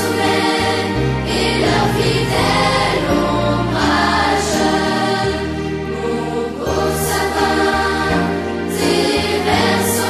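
Choral music: a choir singing held chords that change every second or so over steady bass notes.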